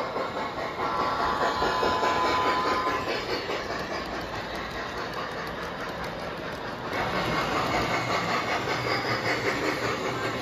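G scale model trains running on a layout: a steady rumble of wheels on the rails and motors, with a faint whistle-like tone from a locomotive's onboard sound system in the first three seconds. The running gets louder about seven seconds in.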